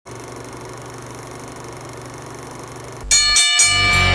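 Sound effects for a film-countdown intro: a faint steady hum with a low tone, then about three seconds in a sudden loud bell-like strike with several ringing tones, struck again half a second later as the intro music starts.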